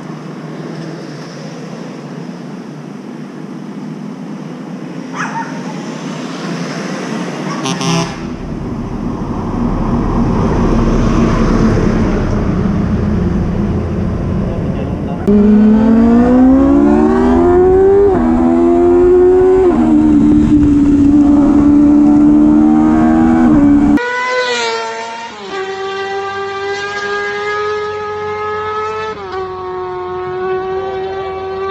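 Sport motorcycle engine pulling away and accelerating through the gears. Its pitch climbs, drops at each upshift about every two seconds, then holds steady while cruising. Street noise comes before it, and rushing wind noise begins about eight seconds in. After a sudden cut near the end there is a steady engine drone whose pitch dips twice.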